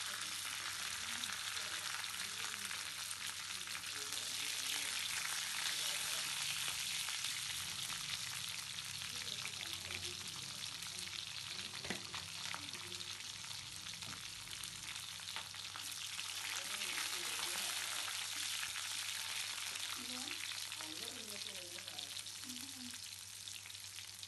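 Fennel seeds, dried red chillies, curry leaves and green chillies sizzling in hot oil in a metal kadai, a steady frying hiss with one sharp pop about halfway through.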